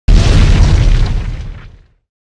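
A deep boom sound effect for a logo intro. It hits suddenly at the very start and fades away over almost two seconds.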